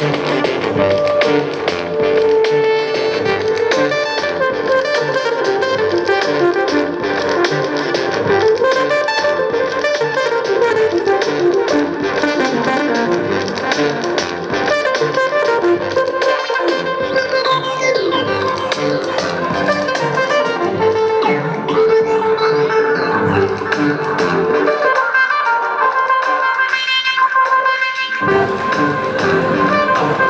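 Improvised electronic music played on a Beatjazz controller, a breath-blown mouthpiece with pressure-sensitive hand keys driving synthesizers. Sustained synth lead lines play throughout, with gliding pitches between about halfway and two-thirds of the way in. The bass drops out briefly near the end.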